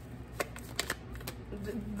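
Tarot deck being shuffled by hand, the cards rubbing and slapping together with a few sharp snaps. The deck is sticking as it is shuffled.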